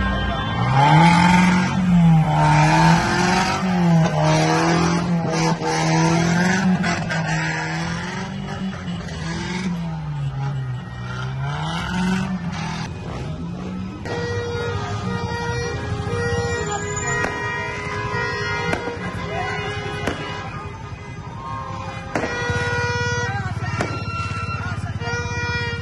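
Street traffic in a celebrating convoy of cars and motorbikes: a low pitched sound rises and falls over and over for about the first half, then music with held, stepped notes takes over.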